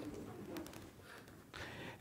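Faint, low bird calls: a couple of soft murmuring calls, about half a second and a second and a half in.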